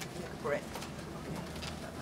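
Room tone in a hearing room with faint off-microphone voices, including a brief rising voice sound about half a second in, over a steady low hum.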